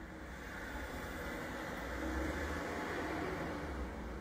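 Steady background noise, a low hum with a hiss over it, swelling slightly through the middle and easing off near the end.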